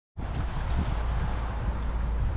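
Wind buffeting the microphone: a steady low rumble with a hiss over it, starting just after a split second of silence.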